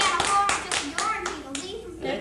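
A few people clapping their hands, about six or seven claps a second, dying away about a second and a half in.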